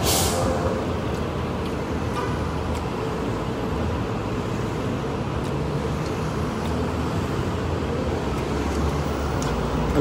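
City street traffic: a steady rumble of passing and idling motor vehicles, with a brief hiss right at the start.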